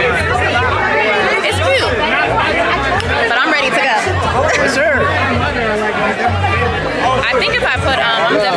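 Party chatter, with many voices talking over each other, over music with a deep pulsing bassline.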